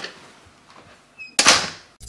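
A door: a light click at the start, then near the end a sudden loud bang of a door shutting that dies away over about half a second.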